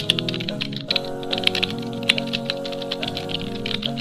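A rapid run of typing clicks, a keyboard-typing sound effect that stops just after the end. It plays over soft background music with sustained notes.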